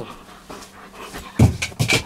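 German shepherd dog panting, then jumping down from the bed, landing with a heavy thump a little past halfway through, followed by a few quick bumps on the floor.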